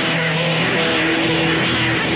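Live rock band in a spacey instrumental jam: electric guitar holds sustained notes over a low drone, with warbling, swooping effect-laden tones above that come close to the sound of engines.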